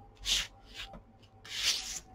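Tarot cards slid by hand across a tabletop: two short rubbing swishes, a brief one near the start and a longer one near the end.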